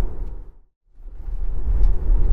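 Low road and tyre rumble heard inside the cabin of a moving Tesla Model Y electric car. It fades out to a moment of silence about half a second in, then fades back up to the same steady rumble.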